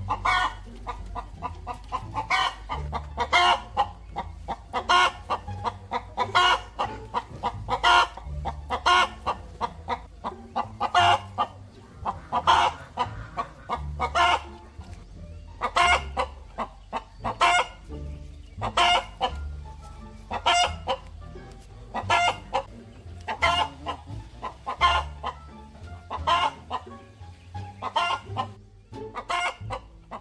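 Chickens clucking over and over, a loud call about once a second.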